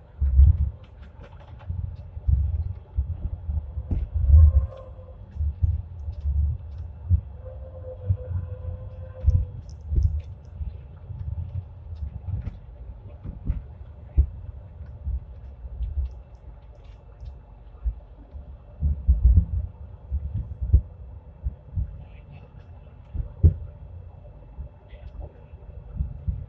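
Hong Kong Light Rail Phase I car running along the track. Heard from inside the cab: irregular low thumps and rumble from the wheels on the rails over a faint steady hum.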